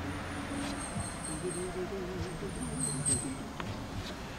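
A man humming a slow melody without words, with a steady low hum underneath and a few faint clicks.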